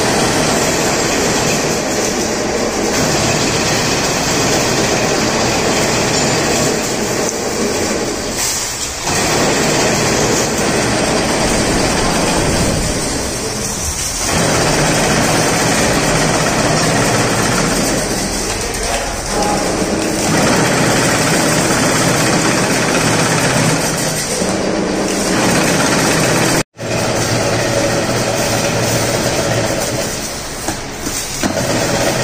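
Belt-driven chain-link fence weaving machine running, a loud continuous metallic clatter that dips briefly about every five or six seconds, and cuts out for an instant shortly before the end.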